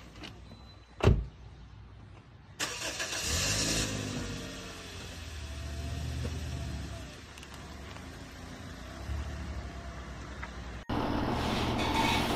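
A car door shuts with a single loud thud about a second in. A little later the car's engine starts with a sudden burst and settles into a steady run, with a couple of mild rises and falls. Near the end it cuts off abruptly and a different steady noise takes over.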